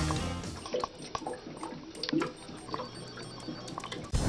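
Rock music fades out within the first second, leaving quiet water drips and gurgles with a few light clicks.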